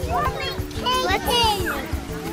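Young children's high-pitched voices, chattering without clear words, over background music of steady held notes.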